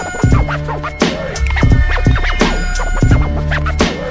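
Hip hop instrumental beat with a deep bass line and punchy drum hits, with turntable scratching sweeping over it.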